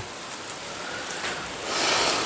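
Rustle of a bundle of plastic plant tags handled in the hands, swelling louder near the end.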